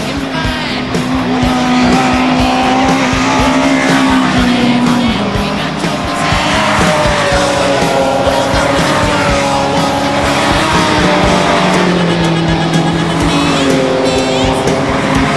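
Touring-car engines revving and passing through a corner, their pitch rising and falling, over a music track with long held notes and a steady beat.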